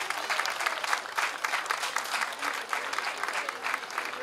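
Audience applauding, many hands clapping densely at the end of a performance.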